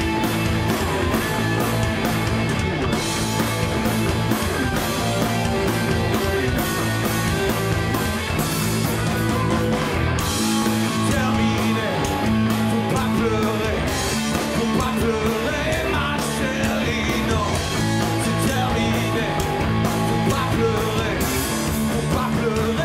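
Live rock band playing loudly: electric guitars, bass and drums, with regular drum and cymbal hits.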